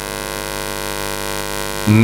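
Steady electrical hum and buzz from a microphone's amplified sound system, a stack of many evenly spaced tones over a faint hiss, heard plainly in a pause of the speech. A man's voice comes back at the very end.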